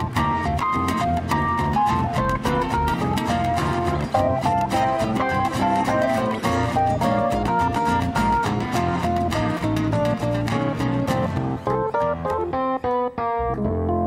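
Acoustic guitar and electric keyboard playing an instrumental solo passage of quick runs of notes. Near the end, a few separate chords are struck with short breaks between them.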